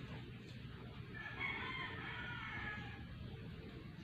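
A bird calling once: one long pitched call of about two seconds, starting about a second in, over steady low outdoor background noise.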